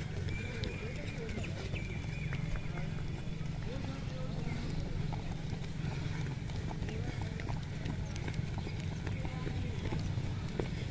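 Footsteps of runners jogging past on a grass-and-dirt track, an irregular patter of footfalls over a steady low rumble, with indistinct voices in the background.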